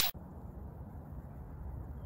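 Steady low rumble of wind on the microphone outdoors. The tail of a swoosh sound effect cuts off at the very start.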